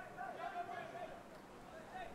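Faint, distant voices calling, over a low steady hiss of open-air ambience.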